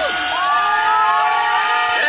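Loud DJ dance music through a PA with the beat and bass dropped out, leaving a held melody line that glides between notes over crowd noise.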